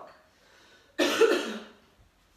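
A woman coughs once, a sudden short burst about a second in.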